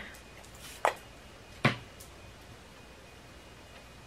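Two short spritzes of a MAC Fix+ pump mist setting spray onto the back of a hand, about three quarters of a second apart, the first about a second in.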